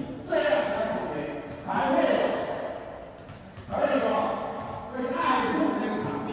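A person's voice in four phrases, each starting loud and then fading, with no words that the speech recogniser could make out.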